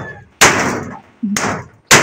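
Two breathy, unvoiced bursts of laughter close to the microphone, each fading quickly, then a sharp click near the end.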